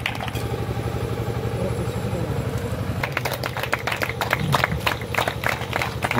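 A steady low engine drone runs throughout, like a generator or idling motor. From about halfway, a small group claps for award recipients.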